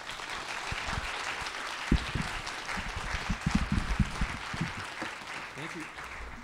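Audience applauding at the close of a talk, thinning out near the end, with a few low thumps mixed in.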